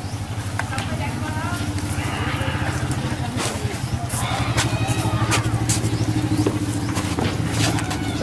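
An engine running steadily, a low, even hum with a fine rapid pulse, with voices talking faintly in the background.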